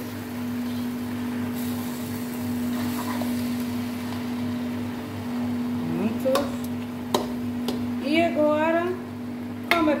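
Metal spoon stirring noodles and vegetables in a large wok over a gas burner, with a few sharp clanks of the spoon against the pan in the second half, over a steady hum.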